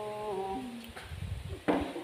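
A woman's voice singing one long drawn-out note that steps slowly down in pitch and ends a little before a second in, then a short burst of voice near the end.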